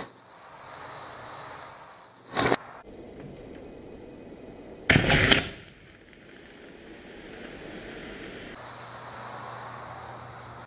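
A pencil's graphite core wired across a high-voltage transformer arcs and blows apart. There is a sharp bang right at the start, another about two and a half seconds in, and a longer, louder blast lasting about half a second around five seconds in, with a steady low hiss between them.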